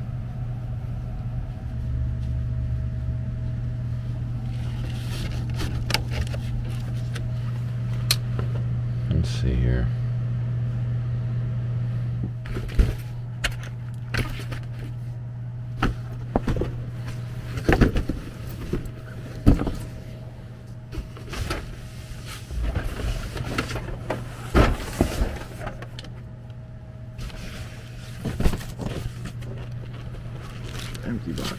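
Cardboard boxes being shifted and knocked about, with a run of knocks, thumps and scrapes from about twelve seconds in, over a steady low hum.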